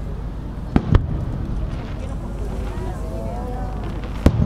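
Aerial firework shells bursting: two sharp booms in quick succession about a second in, over a crowd's chatter.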